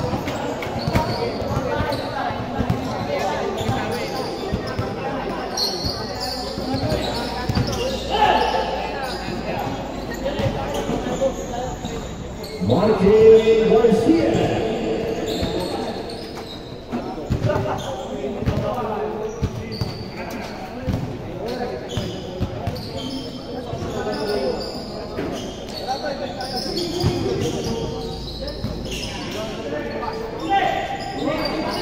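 A basketball bouncing on a hard court in a large hall during play, with many short knocks from dribbles and footfalls, under the players' indistinct shouts and calls. One louder voice rises about thirteen seconds in.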